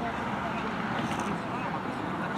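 Indistinct voices of footballers calling out across an outdoor pitch, over steady outdoor background noise.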